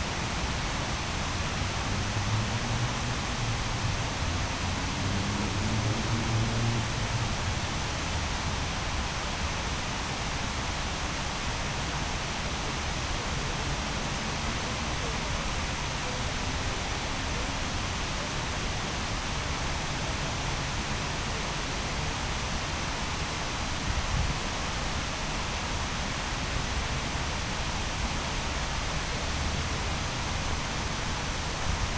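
Steady, even hiss of outdoor city ambience at night, with no distinct events.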